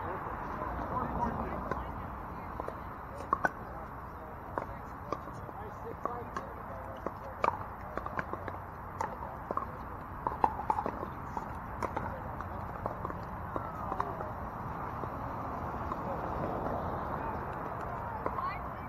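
Pickleball paddles striking plastic balls: sharp, irregular pops, some louder than others, over a murmur of distant voices.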